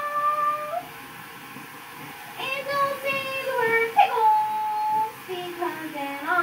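High-pitched wordless vocal notes, held and sliding in pitch, in two phrases with a quieter pause of about a second and a half between them.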